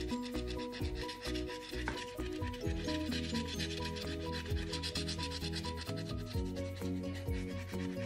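Lottery scratch-off ticket being scratched, its coating rubbed off in a rapid, continuous run of short scratching strokes.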